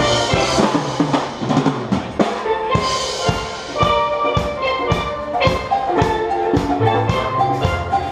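A steel band playing an upbeat tune: many steel pans struck in a fast, steady rhythm, with ringing melody notes over deep bass-pan notes.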